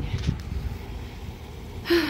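Low, steady outdoor rumble, with a short sharp intake of breath near the end.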